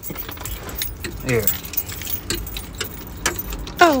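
Quick light clicks and jingling rattles of a person climbing into a car seat and handling things.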